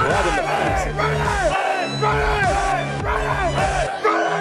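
Men yelling in short, repeated shouts, about two a second, over background music with steady bass.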